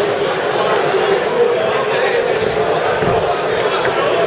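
Spectators around a boxing ring shouting and talking over one another, echoing in a large hall, with a few dull thuds from the boxers in the ring.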